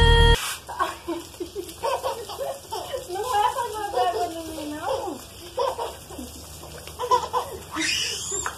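A toddler babbling, calling out and laughing in a high voice, with water from a garden hose splashing on the wet floor.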